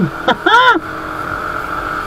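Motor scooter running steadily on the road, a constant engine whine heard from the rider's seat, with a brief vocal sound from the rider about half a second in.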